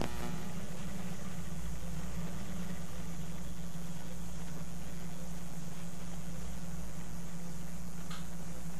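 Motorized arthroscopic shaver running with a steady low hum as its toothed blade rotates against soft tissue.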